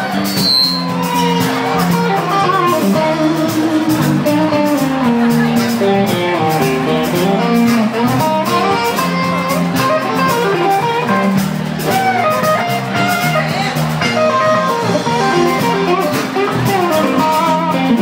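Live band playing an instrumental passage: a guitar plays a busy melodic line over bass and drums with steady cymbals.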